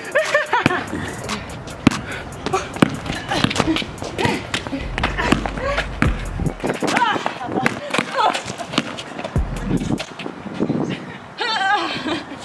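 A basketball bouncing on a hard outdoor court and sneakers scuffing in one-on-one play: a run of irregular sharp knocks, under background music and voices.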